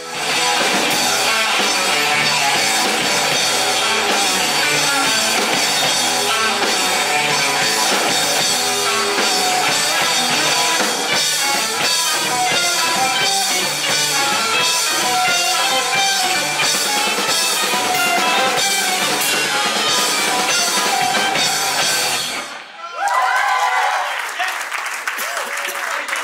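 Live rock band of electric guitars, bass guitar and drum kit playing loudly, with a dip at a cut at the very start. The music stops abruptly about 22 seconds in, and the audience cheers and claps.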